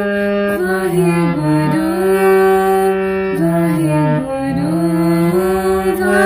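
A harmonium playing a shabad melody in held notes that move in steps, with a woman singing along in sliding, ornamented phrases.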